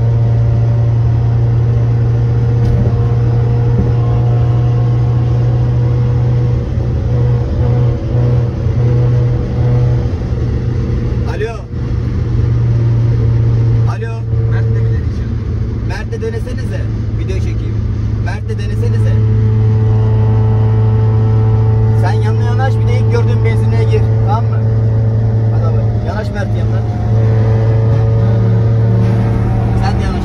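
Honda Civic's engine droning steadily under load at motorway speed, heard from inside the cabin, with a few brief dips in loudness partway through.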